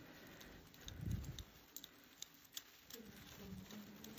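A quiet room with a few faint, sharp clicks in the middle and a brief low murmur about a second in.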